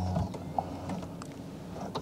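Electric steering-column adjustment motor of a HiPhi Z humming as the wheel is moved with the spoke buttons, stopping a moment in; faint mechanical clicks follow.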